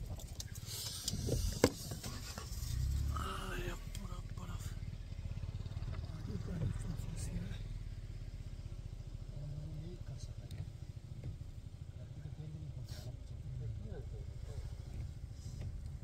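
Car engine idling with a steady low rumble. A single sharp knock about a second and a half in.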